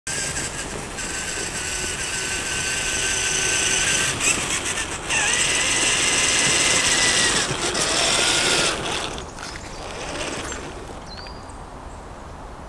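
Electric motor and geared drivetrain of an Exceed RC Maxstone 1/5-scale rock crawler whining as it drives, the pitch dipping and shifting with the throttle. It grows louder as it comes closer, then drops away about nine seconds in as the crawler slows to a stop.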